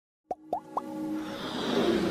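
Three quick pop sound effects, each sliding upward in pitch, then a swelling electronic riser that grows louder, as in an animated logo intro.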